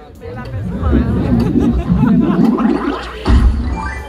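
Mostly speech: voices talking, loudest in the middle, with audience chatter around them.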